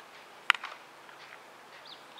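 A single sharp crack about half a second in, typical of a bat hitting a ball for a fielding drill, followed by a couple of small clicks. Over an open-air background, faint bird chirps come near the end.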